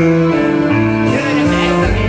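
Karaoke backing track playing loudly over the room's speakers: an instrumental passage with guitar and sustained melody notes.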